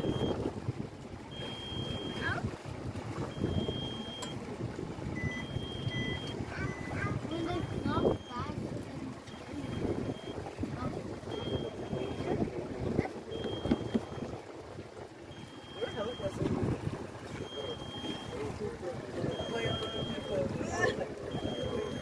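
A small boat on open sea, with water slapping at the hull and wind on the microphone. Irregular calls or voices sound over it, and a faint high electronic beep repeats about every two seconds.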